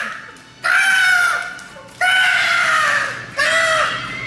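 A young man's high-pitched, crow-like shrieks: three of them, each under a second long and sagging slightly in pitch, as he doubles over laughing.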